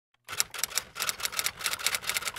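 Typewriter-style key-clacking sound effect: a quick run of sharp clicks, about six a second, starting a moment in.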